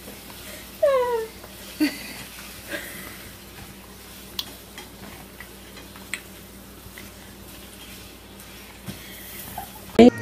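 Domestic hen giving one falling call about a second in, then a short low call, followed by a few sparse faint ticks.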